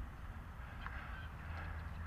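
Faint outdoor background: a steady low rumble, with two faint brief higher sounds about one second and one and a half seconds in.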